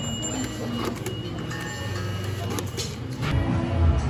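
Background music with the clicks and a short electronic beep of a card-payment ordering kiosk. A deeper, louder rumble comes in near the end.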